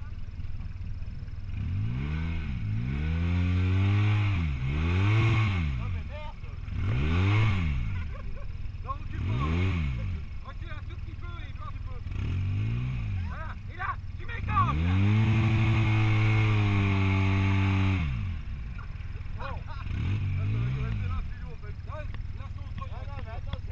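Polaris RZR side-by-side engine revved in about seven bursts, each rising and falling in pitch, with the longest held for some three seconds a little past the middle. The UTV is stuck in mud at a river bank, trying to climb out.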